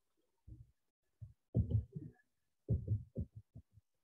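A man's voice muttering in short, muffled fragments, separated by near silence.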